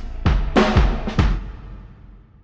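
Background music ending on a run of about four heavy drum hits in just over a second, the last one ringing out and fading away.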